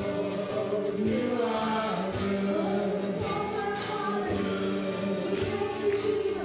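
Live worship band playing a song: several voices, mostly women's, singing together in sustained notes over acoustic guitars and a drum kit with cymbals keeping a steady beat.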